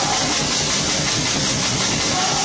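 Loud live rock band, distorted electric guitar and drums, recorded on a home video camera whose overloaded microphone turns the music into a dense, steady wash of noise with little clear pitch.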